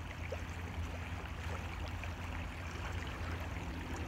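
Steady outdoor background noise: an even low rumble with a faint hiss over it, with no distinct events.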